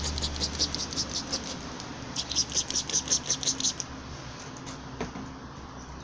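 Hand trigger sprayer pumped rapidly, spraying soapy water onto the car door's window seal: two quick runs of short hissing spurts, about seven a second, the second stopping a little before four seconds in, then a single click about five seconds in.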